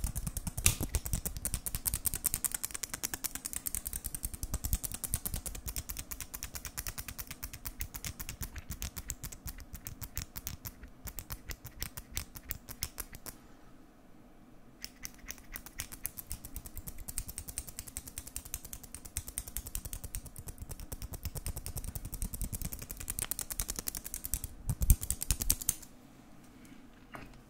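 Fingers tapping and scratching on the camera up close, a fast, dense run of small clicks that breaks off briefly a little past the middle.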